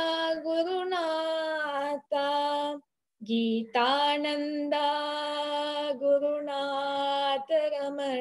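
A young woman singing a devotional invocation to the guru lineage, solo and unaccompanied, in long held notes with brief pauses for breath about two and three seconds in.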